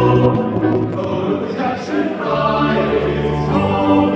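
Men's vocal ensemble singing in harmony, holding chords, with a low bass note joining about two seconds in.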